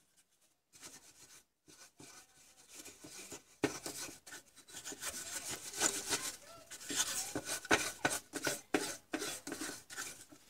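Circuit board being handled and slid about on a paper towel: irregular rubbing and rustling in short strokes, louder from about three and a half seconds in.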